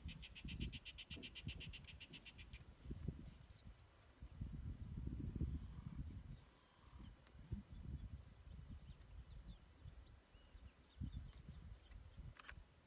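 Quiet bush ambience: a high, fast pulsed trill of about ten pulses a second for the first two and a half seconds, then a few short high chirps, over a gusty low rumble on the microphone.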